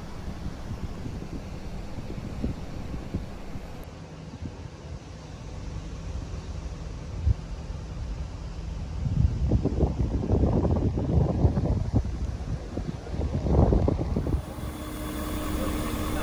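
A vehicle engine running low and steady at idle. From about nine seconds in, gusts of wind buffet the microphone.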